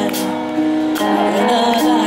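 Live band music with a lead vocal holding long sung notes through the PA, a percussive beat about once a second.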